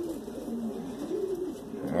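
Homing pigeons cooing: a run of low coos one after another, each rising and then falling in pitch.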